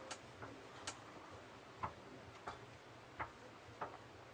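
Faint, small clicks, about one every second but unevenly spaced, from a stainless steel watch and its steel bracelet being handled on a display wrist.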